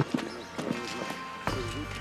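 A short laugh, then a few soft scattered knocks over faint background music, with a low hum coming in near the end.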